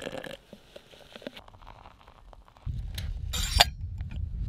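Hot water pouring from a kettle into a stainless steel French press, the pour stopping about half a second in. Then it is fairly quiet until a low rumble of handling sets in, with a short metallic clink and rattle near the end as the press lid goes on.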